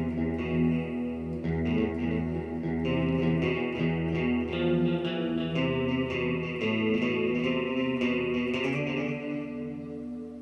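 Electric guitar picking a riff on a clean setting with delay from a Zoom effects pedal, the notes ringing into each other. The playing stops near the end and the last notes ring out and fade.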